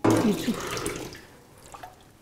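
Water running and splashing into a plastic basin at a sink. It is loudest at the start and dies away within about a second.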